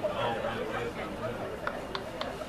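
Indistinct chatter of several voices, with two short sharp clicks near the end.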